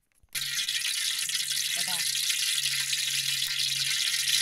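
Fish frying in hot oil in a large aluminium kadai: a dense, steady sizzling hiss that starts suddenly a moment in.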